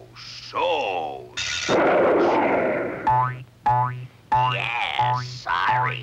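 Cartoon sound effects: a falling pitched glide, then a loud noisy rush, then a run of five springy boings about two-thirds of a second apart as a coiled spring bounces.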